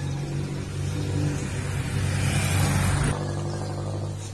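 Motor vehicle engine noise: a steady low hum with a rushing swell that grows louder and then drops off abruptly about three seconds in.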